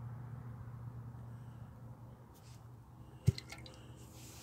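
Low rumble of road traffic going by, slowly fading, with one sharp click a little over three seconds in.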